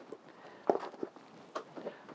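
A few light knocks and clatters of a small plant pot and a kettle being handled and set down on a potting bench, four brief separate sounds.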